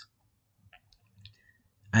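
Near silence with two faint, short mouth clicks about a second apart; a man's voice resumes near the end.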